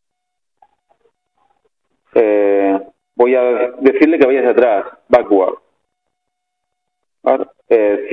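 A man speaking in a few short phrases, with silent gaps between them.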